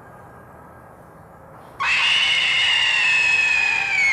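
A ringwraith's (Nazgûl's) shriek cuts in suddenly about two seconds in: a loud, piercing, high-pitched cry that holds and sags slightly in pitch. Before it there is only faint outdoor hiss.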